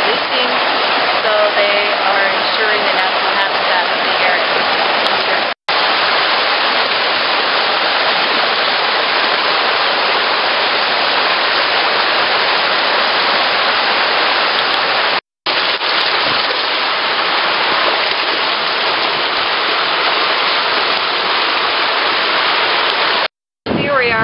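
River water rushing over shallow rapids at a rock ledge, a steady wash of noise. It drops out briefly three times: about five seconds in, about fifteen seconds in and just before the end.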